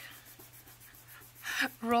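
Fingers rubbing and scuffing across a paper tag, a faint dry rasping in quick repeated strokes, cut off by a woman's voice near the end.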